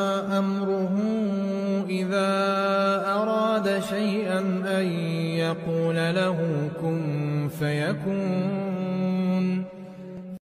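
A man reciting a Quran verse in Arabic in melodic tajweed style, with long held notes and ornamented turns in pitch. The recitation ends just before the close.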